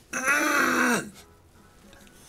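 A man sings one rough, breathy note lasting about a second, its pitch dropping at the end: a vocal warm-up on a voice that is not yet warmed up early in the morning.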